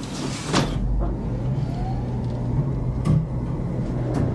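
A steady low motor hum sets in just after a knock, with a faint rising tone in its first second or so and a click about three seconds in.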